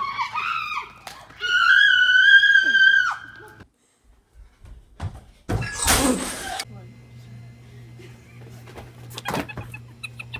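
A girl screaming with excitement, one high scream held for about two seconds. After a short gap a loud crash lasts about a second, then a faint steady low hum remains with a few clicks.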